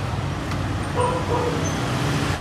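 Steady street traffic, mostly motorbikes, passing on a city road.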